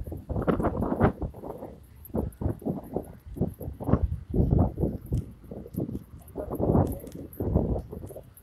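Irregular bursts of low, rumbling buffeting and knocking on a handheld phone's microphone, the kind made by wind and by handling while the phone is carried along.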